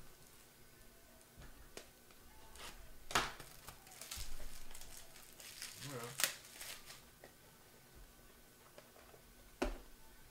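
Plastic packaging crinkling and rustling as it is handled, with a few sharp clicks.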